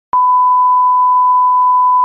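A single steady electronic beep, a TV-style test tone, held at one pitch and loudness for about two seconds.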